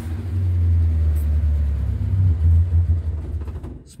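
1968 Morris Minor 1000's 1098 cc A-series four-cylinder engine idling steadily with the choke pushed in, a low even drone that sounds well enough. It fades away near the end.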